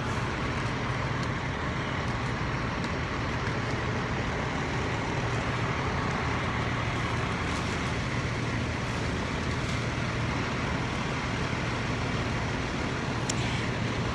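Fire trucks' diesel engines running steadily at a fire scene, a constant low drone under an even outdoor hiss.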